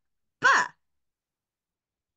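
Only speech: one short spoken syllable, the letter 'B'.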